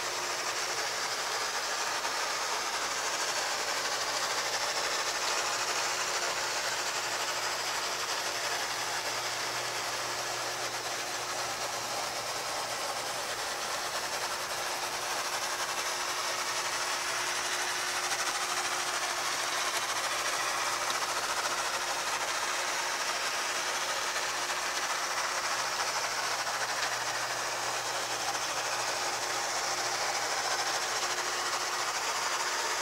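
Mesmergraph magnetic sand drawing machine running: its gear-driven turntable turning under the table while steel balls roll through fine aluminum oxide powder. The result is a steady mechanical whir and hiss with a constant hum.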